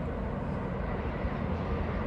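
Steady outdoor background rumble and hiss with no distinct events.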